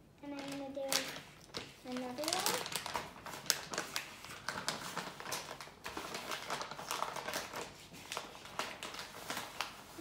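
A plastic pouch of coconut sugar crinkling and rustling as it is handled and scooped from, a dense run of small crackles and clicks. A child's voice hums a few short notes at the start.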